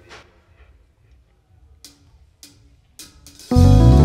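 Live band starting a song: a few sharp drumstick clicks about half a second apart count it in. About three and a half seconds in, electric guitar, bass guitar and drums come in together loudly on a held chord.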